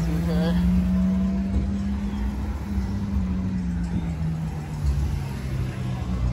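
Honda S2000's four-cylinder engine running at low revs as the car rolls slowly past, a steady low drone that steps down slightly in pitch midway.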